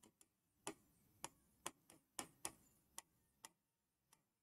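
Faint, irregular clicks of a stylus tapping on an interactive touchscreen display while handwriting, about seven short taps in a few seconds.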